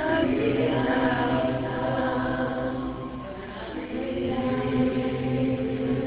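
A congregation singing a slow chant together, many voices holding long notes, with a short lull about three seconds in before the voices come back in.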